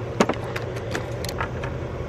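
A few sharp, irregular metallic clicks and taps of a socket wrench working the battery's terminal bolt while a cable is fitted, over a steady low hum.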